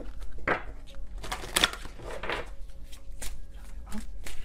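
A deck of tarot cards being shuffled by hand: several short, irregular swishes of the cards.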